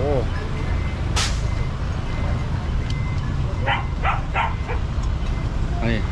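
A vehicle engine idling, a steady low rumble throughout, with a brief hiss about a second in and a quick run of four or five short sharp sounds near four seconds.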